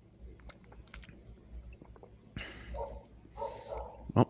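Faint mouth sounds of someone drinking close to a microphone: small wet clicks from sipping and swallowing, then two short breathy rushes, about two and a half and three and a half seconds in.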